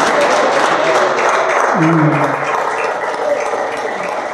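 Audience applauding, a round of clapping that slowly dies down toward the end, with a man's voice briefly heard about two seconds in.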